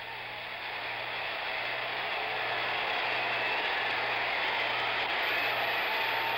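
Stadium crowd cheering, swelling steadily louder, heard through an old, hissy broadcast recording with a low steady hum underneath.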